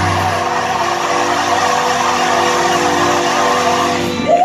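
Gospel choir holding one long, steady chord.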